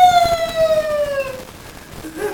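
A man's long, high-pitched squeal of laughter: one drawn-out tone that falls in pitch and fades out about one and a half seconds in.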